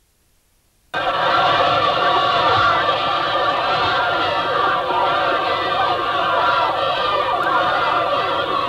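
A crowd of children shouting and cheering together, many voices at once, cutting in suddenly about a second in after near silence.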